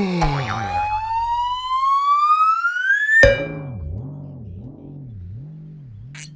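Cartoon sound effects: a pitched tone sliding down, then a long rising whistle-like glide that ends in a sharp pop about three seconds in. A low wobbling tone follows, warbling up and down about once every 0.7 seconds.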